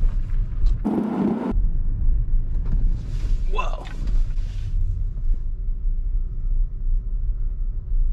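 Low, steady road and tyre rumble inside the cabin of a Tesla Model Y electric car as it drives. A brief burst of noise comes about a second in, and a short voice-like sound around three and a half seconds.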